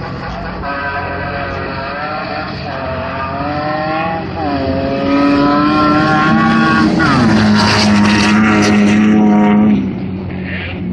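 Engine of a sand drag-racing vehicle at full throttle, its pitch climbing and dropping twice as it runs down the strip, growing louder before it stops abruptly just before the end.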